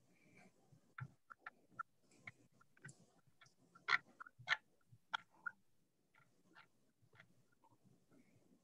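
Faint, irregular clicks and light taps, a dozen or so, with a couple of louder ones about four seconds in.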